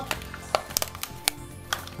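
Quiet background music with a few sharp crinkles and clicks of a thin plastic bag being pulled off a small plastic toy.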